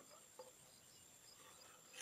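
Near silence, with faint crickets chirping: a thin steady high trill under soft repeated chirps.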